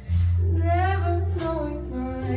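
Live jazz combo playing a slow ballad: a female vocalist sings with vibrato over held electric bass notes and keyboard, the band coming back in just after a brief lull.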